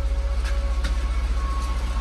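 Jaguar XJR engine idling steadily with an even, rapid low pulse, running after a jump start from a deeply discharged battery. A couple of faint clicks sound about half a second and about a second in.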